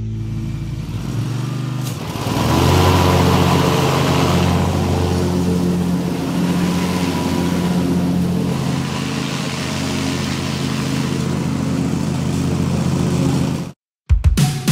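A John Deere riding lawn tractor's engine running. It rises in pitch about two seconds in, then holds steady, and cuts off suddenly near the end.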